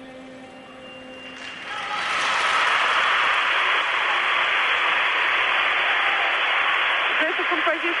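Recorded violin music stops about a second and a half in. Arena crowd applause then swells up and carries on steadily at the end of the routine, with a man's commentary starting over it near the end.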